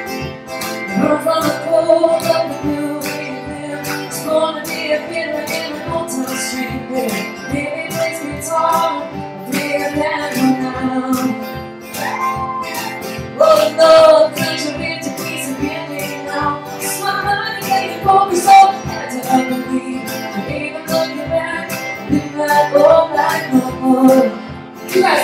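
Live band playing an upbeat song on acoustic guitars, with singing over a steady percussive beat.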